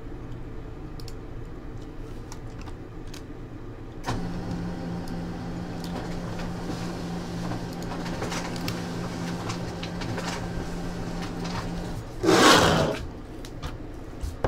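Faint clicks over a low room hum, then a small motor starts about four seconds in and runs steadily on one low tone for about eight seconds. It ends with a loud, brief burst of noise lasting under a second.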